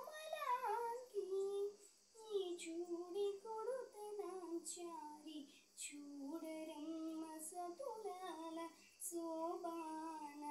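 A girl singing solo and unaccompanied. She holds long notes with pitch slides between them and pauses briefly for breath every few seconds.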